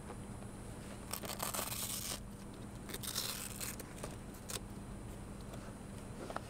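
A fabric tool bag holding metal hand tools being handled: two rasping rustles, one about a second in and a shorter one about three seconds in, like a strap being pulled open, with a few light knocks.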